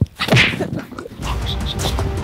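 A sharp whip-like swish right at the start, an edited transition sound effect. About a second in, background music with a steady low bass comes in.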